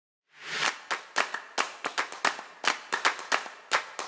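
A short whooshing swell, then a steady run of sharp, clap-like percussive hits, about four a second.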